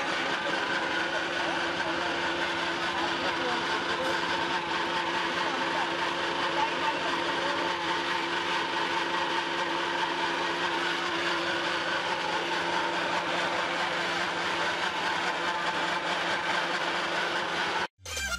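Electric-motor-driven feed pellet mill running steadily under load, pressing out feed pellets, its motor and die making an even mechanical drone with steady tones. The sound cuts off suddenly at the very end.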